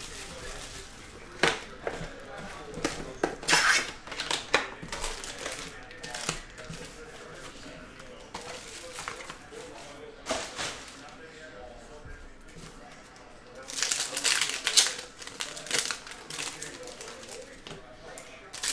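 Plastic shrink wrap crinkling and tearing as a sealed trading-card box is unwrapped and opened, in scattered bursts of rustling with quieter handling between.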